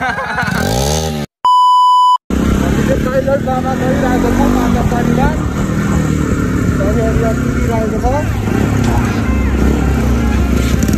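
A falling sweep in pitch, then a loud one-second electronic beep about a second in, cut off sharply. After it, motorcycle engines run steadily in town traffic, with voices over them.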